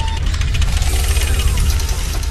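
Sound effect for an animated logo transition: a loud, steady rumbling noise with a rapid crackle, and a faint tone gliding downward about a second in.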